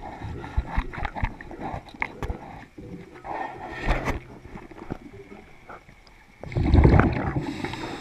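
Underwater recording of a diver's scuba breathing: scattered clicks and knocks, then about six and a half seconds in a loud rumbling gush of exhaled bubbles from the regulator, followed by a hiss.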